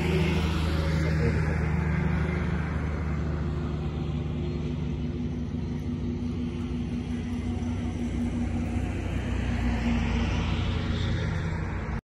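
Road traffic: a steady low engine hum throughout. One vehicle goes by with a whoosh that fades over the first few seconds, and another approaches and passes near the end.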